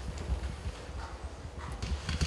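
Microphone handling noise: low rumbling and scattered knocks as a live microphone is lifted and passed from one hand to another.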